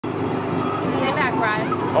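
Brief talking over a steady low hum.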